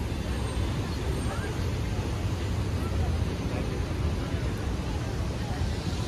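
Steady low rumble of city traffic, with faint voices of people nearby.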